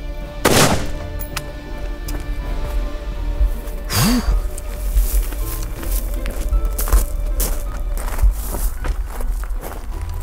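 A single 5.56 mm rifle shot from a 20-inch AR-15 firing 55-grain ammunition, sharp and loud about half a second in, over background music. Another sudden thump comes about four seconds in.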